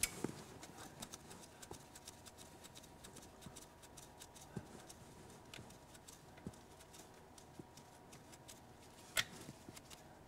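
Faint, irregular small metallic clicks and ticks of fuel injector hard-line nuts being spun off by hand, with a sharper click a little after nine seconds.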